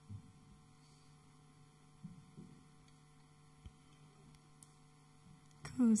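Steady low electrical mains hum from the sound system, with a few faint thumps and knocks along the way. A woman starts speaking just before the end.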